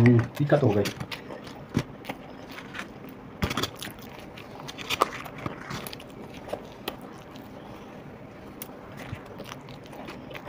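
Eating sounds: bites into and chewing of crisp battered fried chilli fritters (mirchi pakoda), heard as scattered short crunches and clicks, the strongest about three and a half seconds in.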